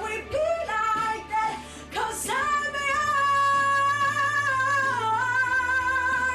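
A young male singer's high, bright voice singing a pop ballad. A short phrase gives way, about two seconds in, to a long held high note with vibrato, which steps down in pitch near the end.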